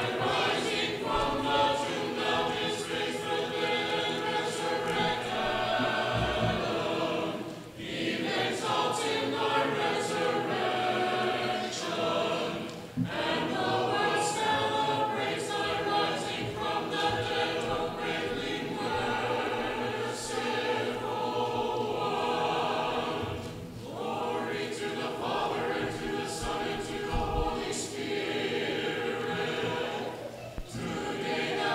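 An Orthodox church choir singing a liturgical hymn unaccompanied, in long sustained phrases with brief breaks about 8, 13 and 24 seconds in.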